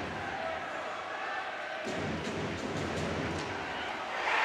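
Ice hockey rink sound during play: a steady crowd murmur with a few faint sharp clicks of sticks and puck on the ice.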